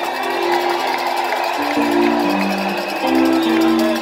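Instrumental music: sustained keyboard chords held steady, changing chord twice, about halfway through and again near the end.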